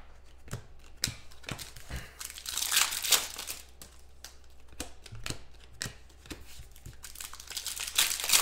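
Plastic wrapper of a Prizm basketball card pack crinkling and tearing as it is opened, with cards clicking and sliding against each other between the hands. The loudest rustle of the wrapper comes about three seconds in.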